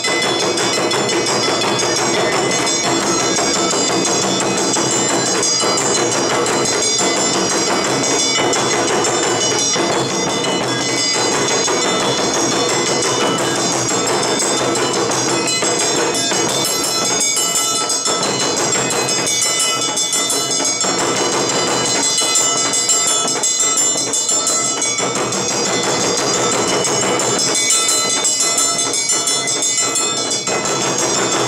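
Awa Odori festival band playing: large and small taiko drums beating a steady, continuous rhythm, with metal kane hand gongs clanging over them.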